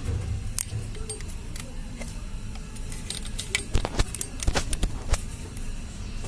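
Metal hand tools clicking and clinking against engine parts, with a quick run of sharp clicks in the middle.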